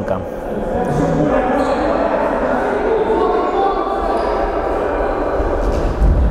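Futsal ball being kicked and bouncing on a sports-hall floor, with players' voices calling out, all echoing in the large hall.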